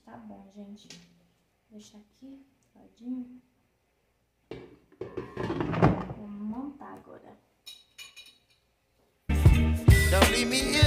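Quiet, indistinct voice sounds with a few short clicks of kitchen handling, then loud background music with a beat cutting in suddenly near the end.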